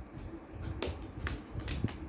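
Wooden puzzle pieces clacking against each other and the wooden board as they are handled and fitted in: about four sharp clicks, starting a little under a second in, over low handling rustle.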